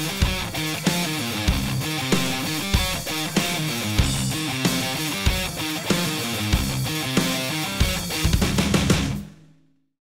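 Heavy metal backing music with electric guitar and drums on a steady beat, fading out about nine seconds in.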